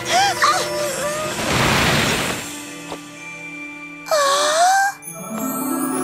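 Cartoon soundtrack: short high-pitched cries in the first second, a brief whoosh, then background music. Near the end a single gliding tone sounds, and the music swells with bright chimes.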